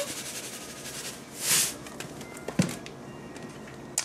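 Table salt pouring from a spouted canister onto raw chicken breasts in a slow-cooker crock: a soft hiss that swells briefly about a second and a half in. A single knock follows a little past halfway through.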